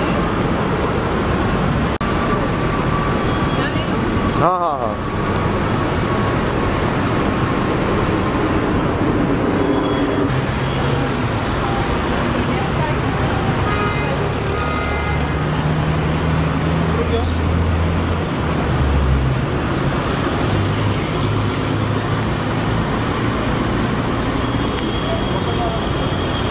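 Busy city street traffic: vehicle engines running and passing, with indistinct voices nearby.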